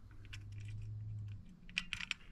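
Light metal clicks and taps of a carriage bolt being pushed through a boat-seat bracket against its spring, with a quick cluster of sharp clicks near the end as it goes through. A low steady hum runs under the first half.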